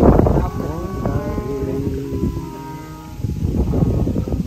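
Hindi devotional singing, with voices gliding into and holding long sung notes over a musical accompaniment.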